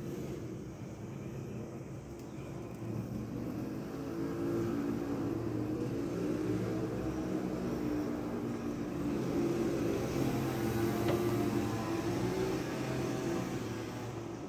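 A motor vehicle engine running with a low, steady hum that wavers slightly in pitch and grows louder about four seconds in.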